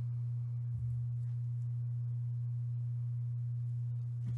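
Steady low electrical hum, a single tone that holds without change.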